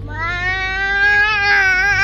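A toddler's long, high-pitched squeal, held for about two and a half seconds with a slight waver, over the low hum of the car she is riding in.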